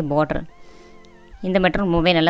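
A person talking, with a short break about half a second in where only faint background music with held, steady notes is heard before the talking resumes.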